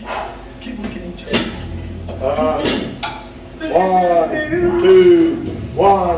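A voice through the stage sound, sliding up and down in pitch and holding one note about five seconds in, over a low steady bass hum, with a few sharp taps.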